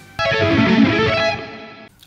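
A short burst of electric guitar that starts sharply, rings and fades over about a second and a half, then cuts off.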